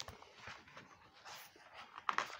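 Faint rustling and light knocks of a picture book being handled and lowered.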